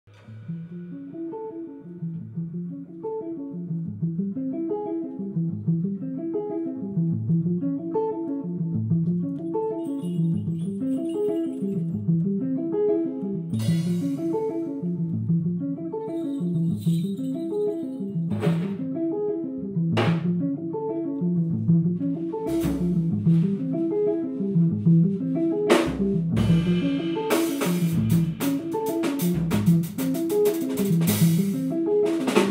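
Live jazz band intro: guitar and double bass play a repeating figure, and the drum kit joins about halfway through with cymbal and drum hits that grow busier near the end.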